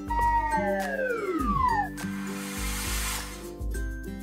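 Cartoon sound effect: a falling whistle that slides down in pitch over about two seconds, followed about half a second later by a short burst of hiss, over steady children's background music.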